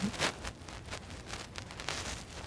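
Scattered light clicks and rustling from a person getting up from a wooden chair and walking off.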